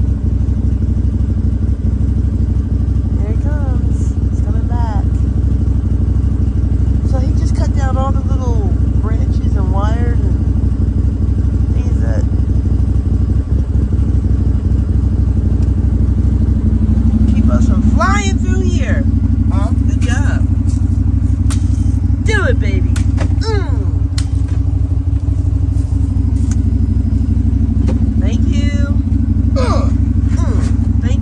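Side-by-side UTV engine running steadily with a low drone as the machine rolls along a rough dirt trail, its note rising a little just past the middle, with rattling clicks from the body in the second half.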